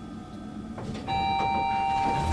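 Elevator arrival chime: a steady electronic tone that starts about a second in and holds, marking the lift's arrival at the floor, over a low hum.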